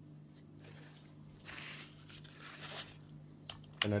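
Faint handling noise from a stirring stick and gloved hands at a silicone resin mould: a scratchy rustle through the middle and a few light clicks, over a steady low hum.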